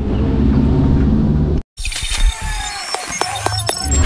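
Low rumble of a pickup truck's engine that cuts off abruptly about a second and a half in. Then a logo intro sting of glitchy electronic sound effects: sharp clicks, short high tones and a low hit near the end.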